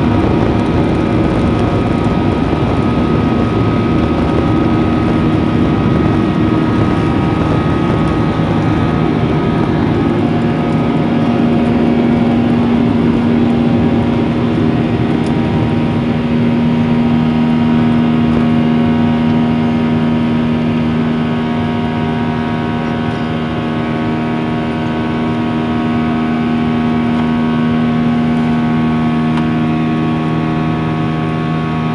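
Boeing 737-800's CFM56-7B turbofan engines at takeoff thrust, heard from inside the cabin: a loud steady drone with fan tones over the rumble of the wheels on the runway. In the second half the aircraft lifts off and the drone takes over as the wheel rumble drops away.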